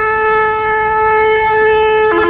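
Instrumental music: one long note held steady.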